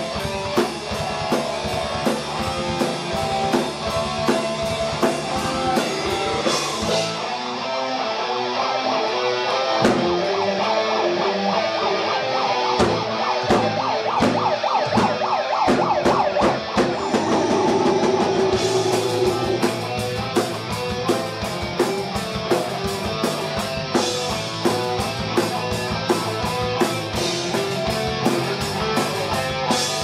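Live heavy metal band playing loud with no vocals: electric guitars and a drum kit. About a quarter of the way in the deep bass drops out while the drums build with quick hits, and the full band comes back in a little past halfway.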